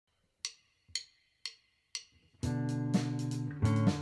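A band's count-in: four evenly spaced clicks, about two a second, then the full band comes in together about halfway through with guitar chords, bass and drums.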